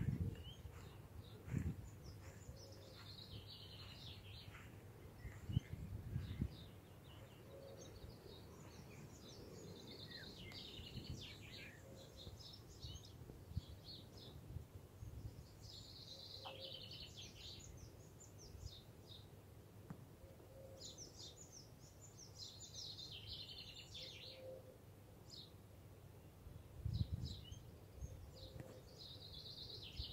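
Faint birdsong: short phrases of high chirps and twitters recurring every few seconds. There are a few soft low thumps near the start, about six seconds in and near the end.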